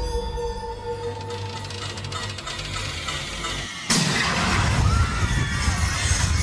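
Eerie ride soundtrack with held tones that fade, then a sudden loud crash about four seconds in, followed by continuing loud rumbling noise.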